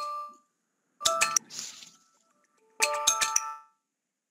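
A bright, chiming music jingle: two short flurries of bell-like notes, one about a second in and one near three seconds, with silent gaps between them.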